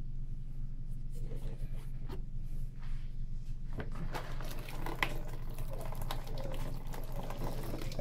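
Water poured from a plastic bottle into a tarantula's burrow and moist substrate, from about halfway in, to flood the spider out of the burrow.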